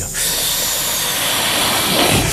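Helium gas hissing steadily as a man inhales it, starting a moment in and running on without a break.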